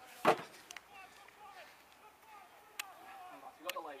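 A single loud thump about a quarter second in, then faint distant shouting from across the field and two light sharp knocks near the end.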